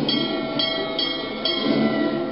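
Ship's crow's nest warning bell struck four times in quick succession, each strike ringing on: the lookout's alarm for an iceberg dead ahead.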